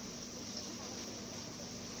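Steady background hiss with a faint hum and no distinct events: room tone.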